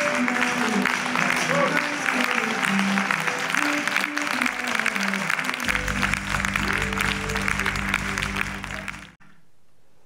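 An audience applauding, with music playing alongside; a low held bass note comes in a little under six seconds in. Both cut off suddenly about nine seconds in.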